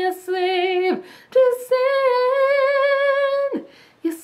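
A woman's voice singing unaccompanied: a short phrase, then one long held note with vibrato that drops off about half a second before the end.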